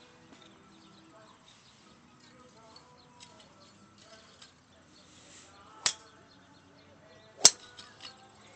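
Golf club striking a ball off a driving-range mat: a sharp crack near the end, the loudest sound here, with a fainter crack of another strike about a second and a half before it.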